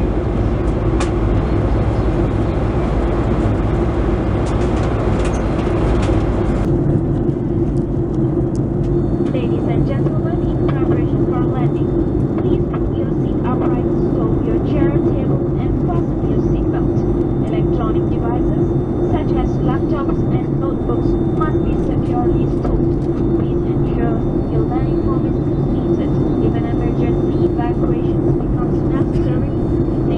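Cabin noise inside a Boeing 737-800 on approach: a steady drone of engines and rushing air with a low hum. The hiss drops away suddenly about seven seconds in, and faint voices chatter in the background after that.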